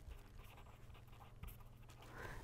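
Faint scratching of a pen writing on paper in short strokes.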